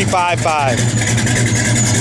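1970 Dodge Charger R/T's 440 cubic-inch V8 idling steadily through Flowmaster dual exhaust, a low even note.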